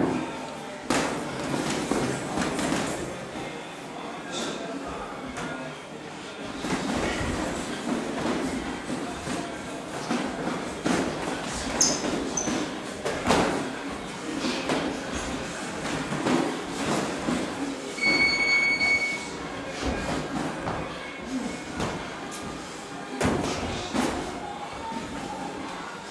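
Boxing sparring in a gym ring: irregular thuds of gloved punches and footsteps on the ring floor over steady room noise, with indistinct voices. A brief high tone sounds about eighteen seconds in.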